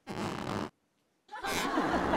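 Two short bursts of comic sound effects edited into the soundtrack, split by a moment of dead silence; the second, louder one is raspy with wavering pitch.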